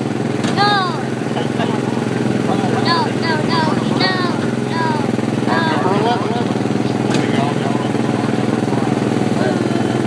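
A go-kart's small engine runs at a steady pitch. Over it come a few clusters of short, high, wordless voice sounds near the start and in the first half.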